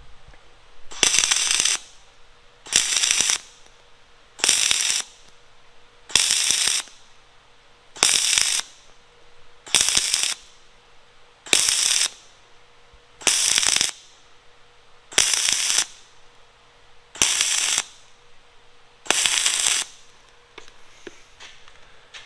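Dual-shield (gas-shielded flux-core) MIG welding arc struck in eleven short bursts, each under a second and about two seconds apart: a vertical weld being laid by triggering, tack after tack.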